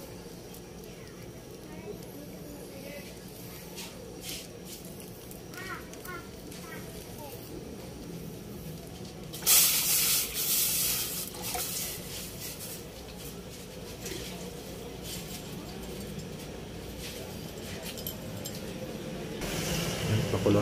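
Coconut milk (second pressing) poured into a steel pot of water: a splashing pour starts suddenly about halfway through and trails off over a couple of seconds, over a steady low hum.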